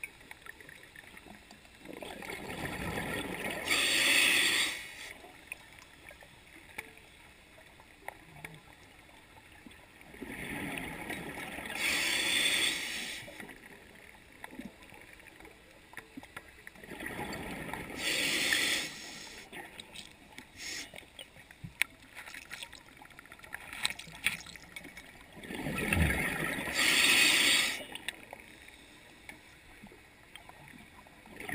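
Scuba diver breathing through a regulator underwater: four breaths about seven to eight seconds apart, each a rush of bubbles that ends in a louder hiss, with faint clicks in between.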